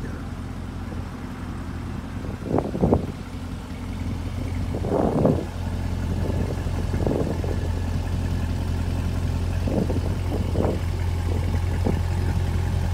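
Corvette C8 Z51's 6.2-litre LT2 V8 idling steadily through its quad-tip exhaust, a low hum that grows louder about halfway through. A few short bursts of noise come and go over it.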